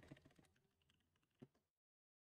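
Near silence with a couple of faint computer keyboard keystrokes; the sound drops to dead silence shortly before the end.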